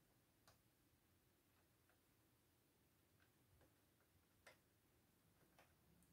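Near silence, with a few faint, irregular clicks of a metal crochet hook against the plastic needles of a circular knitting machine as stitches are worked back up.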